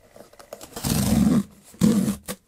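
Corrugated cardboard box being ripped open along its tear strip: two loud rips, the first starting just under a second in and lasting about half a second, the second shorter near the end.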